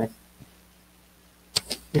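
A man's lecturing voice trails off into a pause of near silence with a faint steady hum, broken by two short sharp clicks about a second and a half in, just before he starts speaking again.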